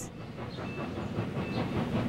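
Train running along the rails at speed: a steady rumble and clatter.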